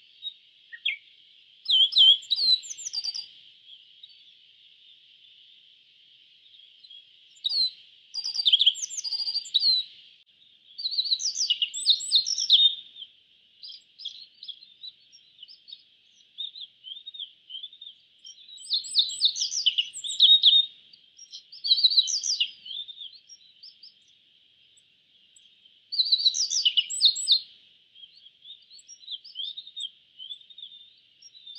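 A bunting singing: bursts of quick, high chirping phrases every few seconds, over a steady faint high hiss.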